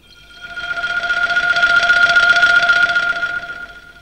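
A dramatic swell in the film soundtrack: one steady high tone over a hiss, rising over about two seconds and then fading away.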